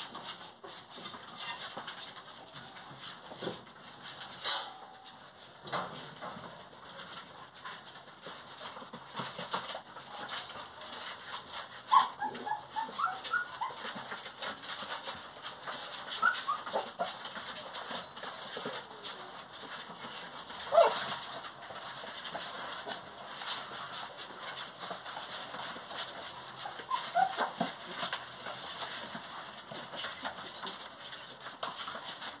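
Young puppies giving short, high-pitched whimpering cries scattered through, the loudest a few sharp yelps, over a constant patter of small scratches and scuffles as they scramble about on cardboard.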